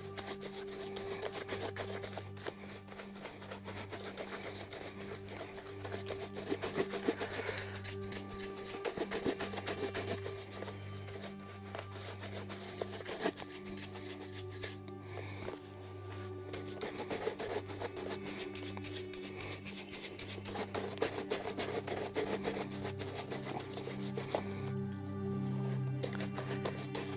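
Bristle shoe brush rubbing back and forth over the polished toe of a leather dress shoe in rapid strokes, buffing the polish, with soft background music underneath.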